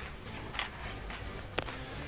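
Low background noise on a video-call line, with a faint tap a little after the start and one sharp click about one and a half seconds in.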